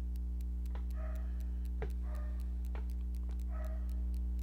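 A steady low electrical hum with a fast, regular faint ticking, about four ticks a second. Three brief faint whines come near one, two and three and a half seconds in.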